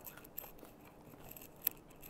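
Faint clicks of a small caviar spoon and bread being handled over a tin on a wooden board, with one sharper click about one and a half seconds in.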